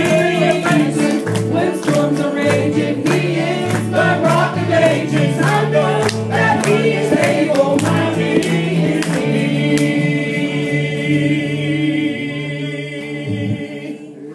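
Gospel vocal group singing in harmony over a band with bass and drums. About ten seconds in they settle on a long held final chord that fades out near the end as the song closes.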